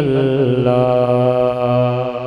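A man's voice reciting a naat, holding one long sung note that wavers in pitch at first, then steadies.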